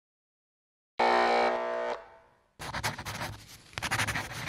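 Intro sound effects: a bright held musical chord that starts about a second in and fades after a second, then a crackling, flickering electric buzz, like a neon sign sputtering on, from the middle of the clip onward.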